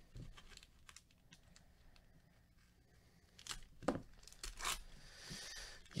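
A foil trading-card pack from a 2007 Upper Deck SP Rookie Threads football box being torn open and crinkled by hand. Quiet at first, then a run of sharp crackles in the second half.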